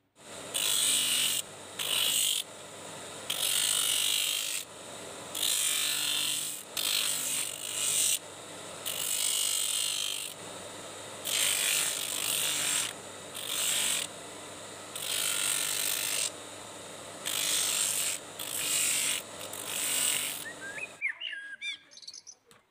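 An electric motor runs steadily with an abrasive wheel on its shaft, and the edge of a small leather sandal is pressed against the wheel again and again. Each pass grinds for half a second to a second and a half, about fifteen passes in all, while the motor hum carries on between them. The sound cuts off suddenly near the end.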